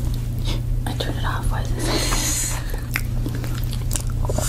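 Close-miked eating sounds: forks digging into layered crepe cakes, biting and chewing, with scattered small clicks and a soft hiss about halfway through. A steady low hum runs underneath.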